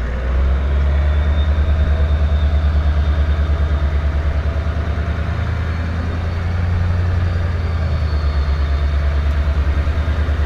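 Toyota LandCruiser engine running at low revs while the 4x4 creeps down a steep sandy track, a steady low drone with a fast, even pulse.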